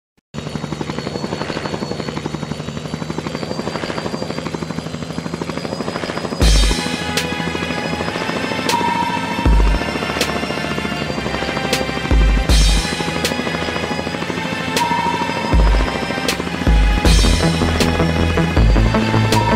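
A helicopter's rotor and engine running steadily with a fast, even beat. About six seconds in, music with a heavy beat and crashing cymbals comes in over it.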